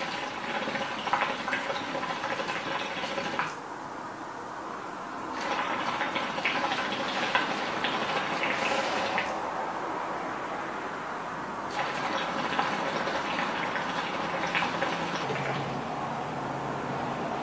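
Hookah bubbling: the water in the base gurgles through three long draws on the hose, each lasting a few seconds, with short pauses between them.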